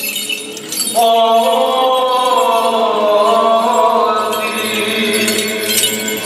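Greek Orthodox Byzantine chant by men's voices: long held notes that glide slowly, entering afresh about a second in over a steady lower note. Small metal bells jingle faintly near the end.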